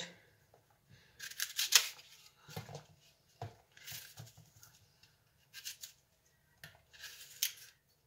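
Small kitchen knife cutting pieces off raw apples held in the hand: several short cutting sounds separated by pauses.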